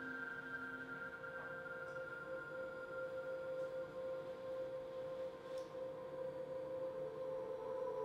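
Ambient drone music of long, steady ringing tones held in layers. A low tone drops out early and new tones fade in over the second half.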